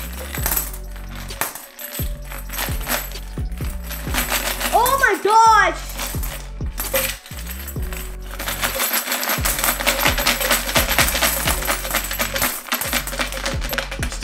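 Coins rattling inside a plastic piggy bank as it is shaken and tipped, clinking out in quick runs onto a heap of coins on a wooden table, over a background music track.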